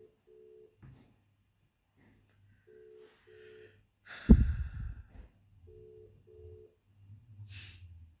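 Telephone ringback tone: a double beep on two close tones, repeating three times about every three seconds as an outgoing call rings. A loud low thump about four seconds in.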